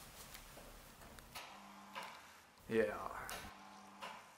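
Small electric motor of a scale model of the Leviathan telescope whining faintly as it raises the model's tube. It starts about a second and a half in and cuts off about two seconds later.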